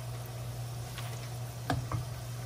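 Besan-battered potato fries frying in hot oil in a wok, a steady sizzle, with two short knocks of the metal slotted skimmer against the pan near the end.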